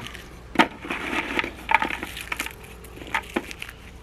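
Small pieces of lump charcoal crackling and crunching as they are squeezed and crumbled by hand into biochar, with a sharp snap about half a second in and another near the end.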